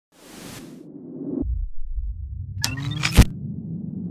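Logo intro sound effect: a short hiss, a low rumble that builds, then a rising sweep ending in one sharp, loud hit about three seconds in.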